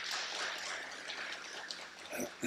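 A congregation applauding in a large room, a steady patter of many hands clapping that slowly dies down.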